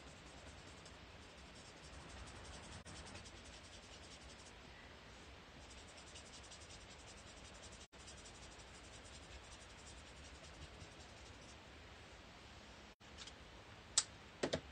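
Faint scratching of a colouring nib rubbed back and forth on paper while blending ink.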